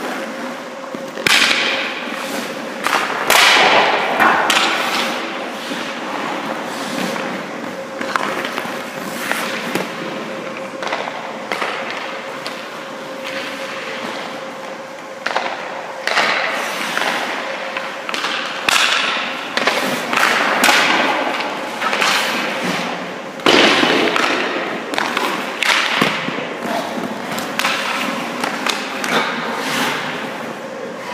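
Hockey skate blades scraping and carving across the ice in repeated short strokes, with occasional thuds and knocks from goalie pads, stick and puck. A steady hum runs underneath.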